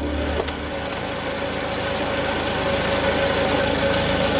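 A car engine running, with a fast, even low pulse.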